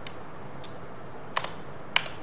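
A few keystrokes on a computer keyboard: faint taps in the first second, then two sharper clicks about half a second apart near the end.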